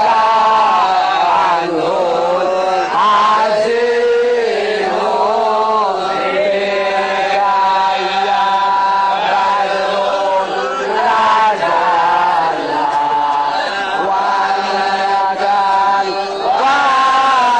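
Melodic chanting of a maulid text in Arabic in praise of the Prophet, the voice line gliding between long held notes with no break.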